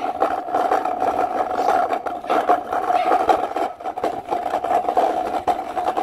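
Scooter rolling over a rough dirt path: a steady hum from the wheels, with frequent rattles and knocks as it goes over bumps.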